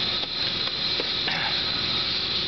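Steady background hiss with a few faint short knocks.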